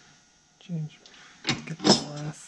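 Hand work at a steel bench vise: a brief murmur of a man's voice, then a couple of sharp knocks and scrapes near the end as the vise and the cut bolt are handled.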